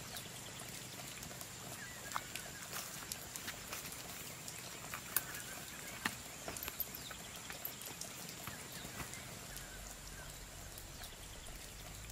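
Footsteps along a dirt trail and brushing through tall grass and shrubs, with many scattered sharp clicks and taps. Faint short bird chirps sound in the background.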